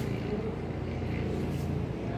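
Steady low background rumble, with a few faint scratches of a marker writing on a whiteboard.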